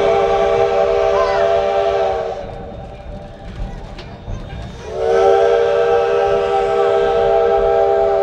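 Steam locomotive whistle blowing two long blasts, each a held chord of several tones: the first ends about two seconds in, and the second starts a little before halfway and is still sounding at the end.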